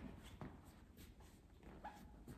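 Near silence: faint rustling and a few soft footfalls as the priest shifts and turns at the altar, with a brief faint squeak near the end.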